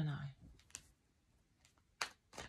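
A woman's voice trailing off at the start, then light clicks of tarot cards being handled on a felt table mat: one sharp click under a second in, a fainter one later, and another as the deck is picked up near the end.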